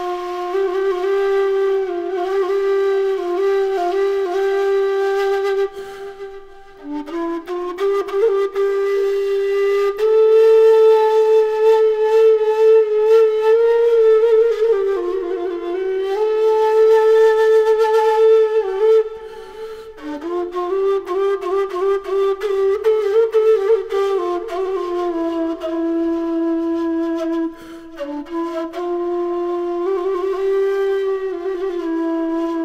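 Homemade PVC kaval, an end-blown rim flute, played as a slow melody of long held notes with small ornaments. There are short breath pauses about six seconds in, around nineteen seconds and near the end.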